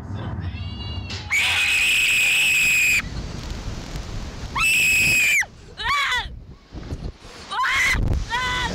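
Slingshot riders screaming as they are flung into the air: a long, loud high scream about a second in, a second shorter scream midway, then brief yelps near the end, over a low rumble.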